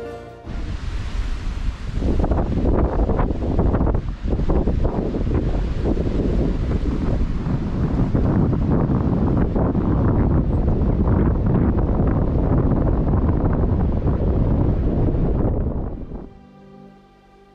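Wind buffeting the microphone, a loud, gusting rumble that sets in about half a second in and keeps up, dipping briefly around four seconds.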